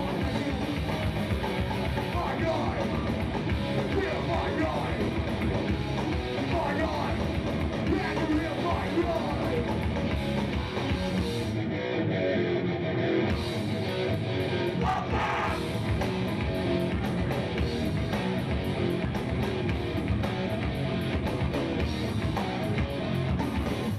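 Hardcore punk band playing live: loud distorted electric guitars, bass and fast drums, with shouted vocals.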